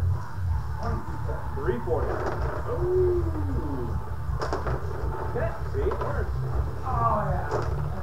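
Rod hockey table game in play: player rods rattling and the puck clicking against the rods and boards, with a few sharp clacks, the clearest about halfway through and near the end. A steady low hum runs underneath.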